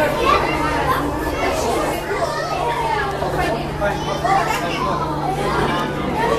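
Indistinct chatter of visitors nearby, children's voices among them, over a steady low hum.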